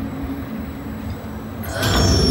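Low steady rumble of a Test Track ride vehicle moving along its track in the dark. Near the end a louder rush of sound swells in.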